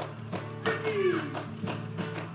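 Samoan group performance music: sharp, even beats about three a second over sustained low tones. About a second in, a loud voice calls out, sliding down in pitch.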